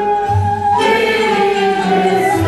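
Mixed choir singing a Turkish classical song in makam segah, with held, gently sliding vocal lines over an instrumental ensemble of oud and kanun. A short low note sounds just after the start.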